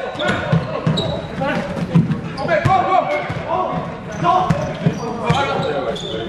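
Basketball dribbled on a sports hall floor: repeated low thuds at an uneven pace, echoing in the large hall, under the voices of spectators talking.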